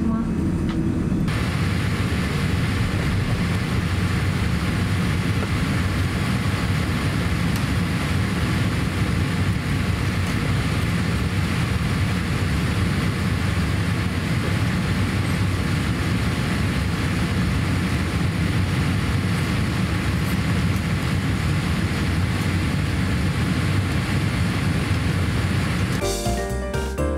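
Steady jet airliner cabin noise while the aircraft taxis in to the terminal: an even rushing hiss over a deep rumble. About a second in the sound changes abruptly and becomes brighter.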